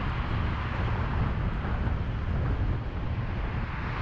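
Steady freeway road noise of a car moving in traffic: a deep low rumble under an even tyre and traffic hiss, with no distinct events.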